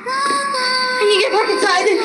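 A song with a high sung voice holding long, steady notes, turning busier and faster-changing about a second in.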